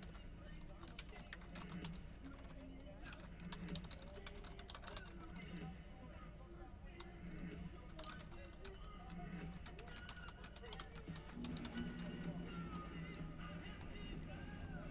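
Typing on a computer keyboard: quick, irregular runs of key clicks, over faint background music and voices.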